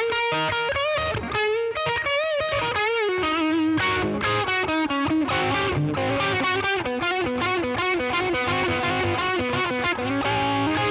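Electric guitar tuned down a half step playing a fast blues lead phrase in the 12th-fret area, with quick picked runs and bent notes.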